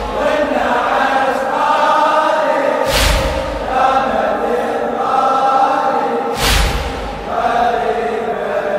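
A large crowd of men chanting a slow mourning refrain together in a latmiyya. Twice the whole crowd strikes their chests at once, a loud heavy slap about every three and a half seconds.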